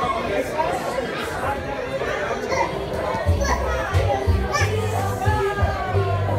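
Many young children and adults chattering and calling, with background music. The music's bass line drops out briefly and comes back in about three seconds in.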